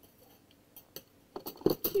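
Stainless steel slotted spatulas clinking against other metal utensils as one is set down into a drawer full of them: a few sharp clinks in the second half, the loudest near the end.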